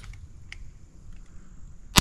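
Quiet for most of the stretch, with a faint click about half a second in; then, right at the end, a single loud shot from a black-powder blunderbuss goes off.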